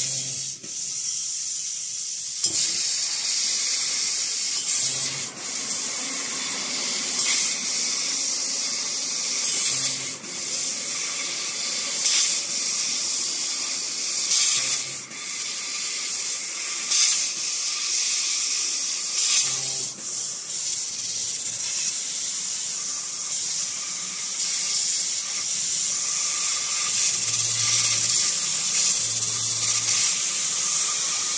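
ACCTEK fiber laser tube-cutting machine cutting 25 mm square steel tube: a loud, steady high hiss from the cutting head's gas jet, broken by short dips every two to three seconds as one cut ends and the next begins. Brief low hums at several of the breaks come from the machine's drives.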